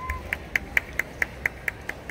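A short steady high note, of the kind a pitch pipe gives for the starting pitch, dies away just after the start. It is followed by an even run of sharp clicks, about four a second, that stops near the end.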